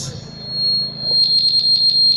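Public-address microphone feedback: a steady high-pitched whistle that starts just after the singer stops, with a rapid flutter over it from about a second in.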